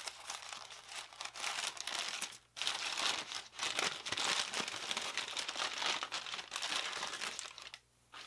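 White wrapping paper being crinkled and pulled open by hand, rustling continuously with a short pause about two and a half seconds in.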